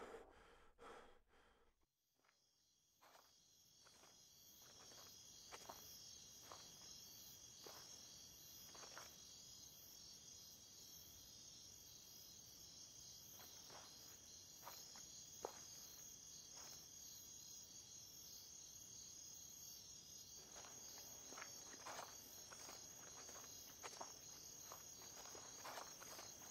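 Faint chorus of crickets chirring steadily at night, fading in after a brief hush about two seconds in. A few soft footsteps or clicks come through, more often near the end.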